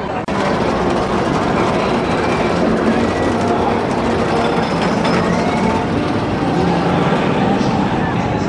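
Roller coaster train running along its track: a steady, loud rumble with faint voices mixed in.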